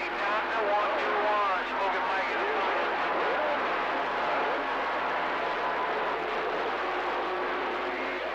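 CB radio receiver carrying a weak, garbled voice transmission under steady static hiss; the words cannot be made out.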